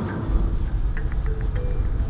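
Steady low rumble of a Kia car's engine and tyres, heard from inside the cabin.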